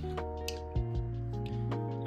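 Background music with sustained notes that change every half second or so, and a single click about half a second in.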